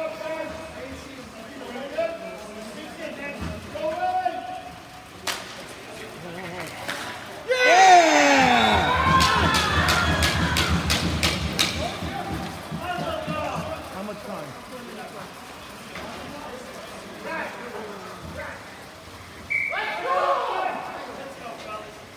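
Ball hockey play: players shouting over the knock of sticks and ball on the plastic sport-tile floor. About seven and a half seconds in comes a sudden loud burst of yelling and cheering, with a quick run of sharp, evenly spaced clacks for about three seconds, the celebration of a goal.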